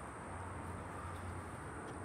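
Quiet outdoor background noise: a low steady hum under a faint even hiss, with no distinct events.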